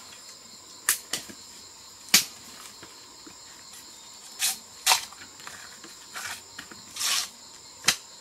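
Dry bamboo cracking and snapping as stems are broken and stepped on: about seven sharp, irregular cracks, one near the end drawn out longer. A steady high insect drone runs underneath.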